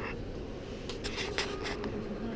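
Handling noise from a handheld camera: a few short scratchy rustles and clicks about a second in, over a steady low room rumble.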